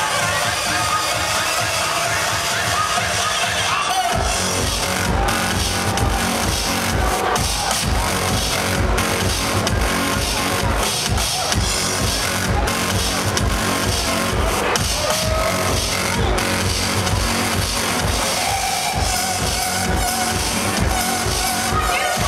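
Electronic dance music DJ set played loud over a festival sound system, heard from within the crowd. It opens on a breakdown without bass, then the kick drum drops in about four seconds in and pounds at about two beats a second.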